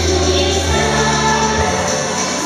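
Girls singing together into microphones over a musical backing with a steady bass line.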